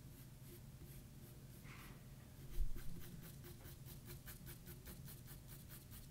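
Pencil strokes scratching across drawing paper in a quick back-and-forth hatching rhythm, laying in shading. The strokes are sparse at first, then settle into about four a second after a soft bump about two and a half seconds in.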